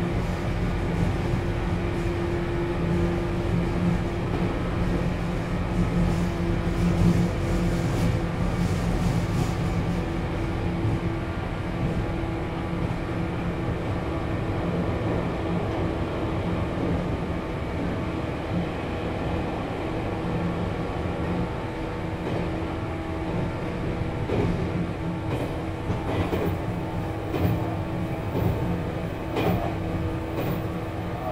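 Running sound of a JR 413-series electric motor car (MoHa 412) under way, with its MT54 traction motors and gearing humming at a steady pitch over rumbling wheel and rail noise. A few sharper clicks come near the end.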